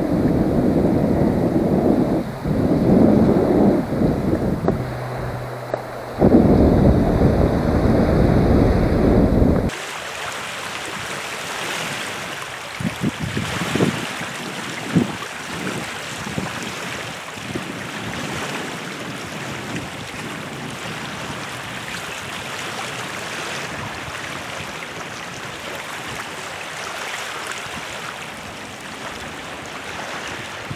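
Wind buffeting the microphone for about the first ten seconds, then an abrupt change to small waves lapping and washing on a rocky saltwater beach with light wind.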